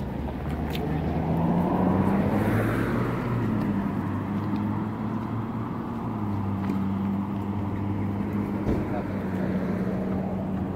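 A motor vehicle engine running with a steady low hum. Its pitch rises about a second in, and the sound swells around two to three seconds in, as when a car passes close by.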